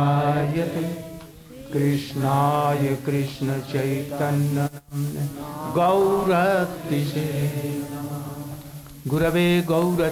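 A man's voice chanting Sanskrit verses in long, slow, held phrases, with a short break about five seconds in and a new phrase starting near the end.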